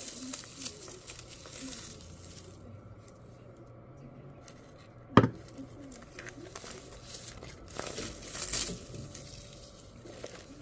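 Paper and ribbon rustling and crinkling as a ribbon tie is unwound from a handmade paper junk journal, with one sharp knock about five seconds in.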